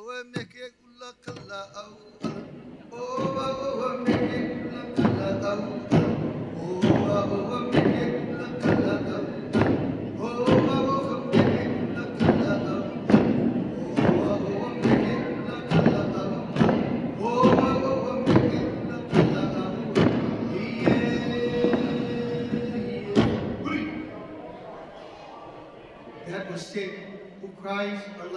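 Hawaiian chant (mele) with hula kala'au: a chanting voice over wooden sticks and staffs struck in a steady rhythm, with strong strokes about once a second and lighter ones between. It fades out near the end.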